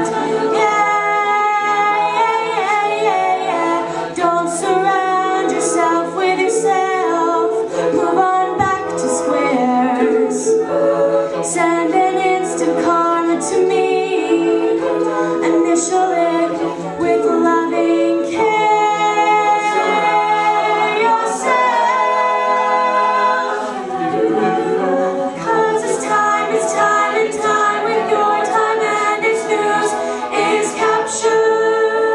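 A cappella vocal group singing live: a female lead sings into a microphone over the group's sustained backing chords, with short hissing accents about once a second.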